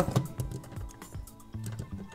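Plastic LEGO bricks clicking and knocking in the hands as an axle is worked through the half-built BB-8 model, a quick scatter of small clicks. Background music plays underneath.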